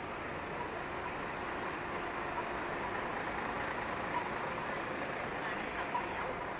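Busy city street ambience: a steady wash of traffic noise with indistinct voices of passers-by.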